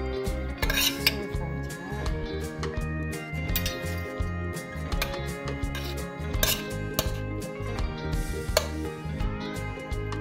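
Metal spoon scraping and clinking against a stainless steel skillet as stir-fry is stirred and spooned out, a scatter of sharp clinks with a few louder knocks, about a second in and again past the middle.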